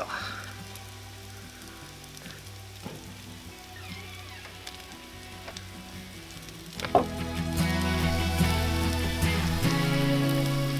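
Mushrooms and onions frying on a cast-iron griddle over a charcoal grill, a faint steady sizzle, with buttered buns toasting on the grate. About seven seconds in, background music comes in and becomes the louder sound.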